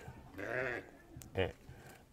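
A single bleat from a farm animal, sheep or goat, heard faintly behind the interview: one wavering call lasting about half a second.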